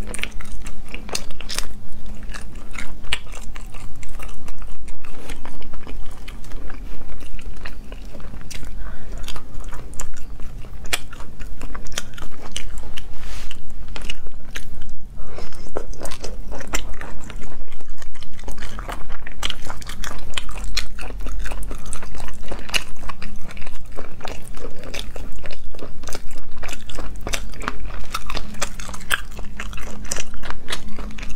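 Close-miked eating: biting and chewing pieces of spicy braised shellfish, with many small sharp crunches and clicks of the mouth close together, over a faint steady low hum.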